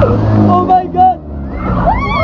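Riders on a swinging amusement ride laughing and giving short shrieks, over a heavy rumble of wind buffeting the phone's microphone as the ride swings.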